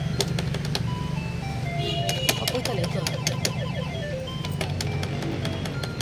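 Smurfs-themed fruit slot machine (maquinita) playing its electronic beeping tune during a spin, short tones stepping between pitches with rapid clicks as the light runs around the ring of symbols, over a steady low hum.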